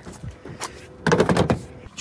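A Tesla Supercharger connector being pulled out of a 2019 Tesla Model 3's charge port and handled. A few light clicks come first, then a louder rattling burst about a second in that lasts around half a second.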